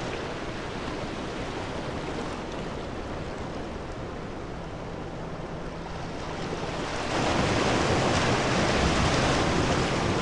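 Sea surf washing around rocks, a steady rushing hiss that swells louder about seven seconds in.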